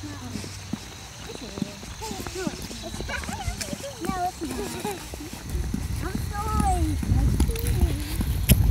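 Young children's voices chattering and calling out in short, high-pitched bursts, with footsteps on a paved sidewalk. A low rumble builds from about five seconds in.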